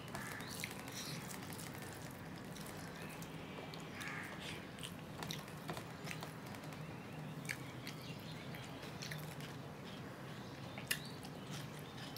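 A man chewing rice and mashed vegetable bhorta with small wet mouth clicks and smacks, while his fingers work rice on a steel plate. There is a sharper click near the end, over a faint steady hum.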